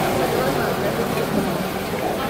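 Busy market ambience: indistinct voices of vendors and shoppers, with a low steady drone underneath.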